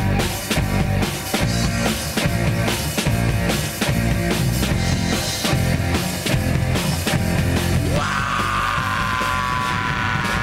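Live rock band playing the instrumental opening of a song, drum kit and electric guitar at a steady driving beat. From about eight seconds in, a sustained high note is held over the band.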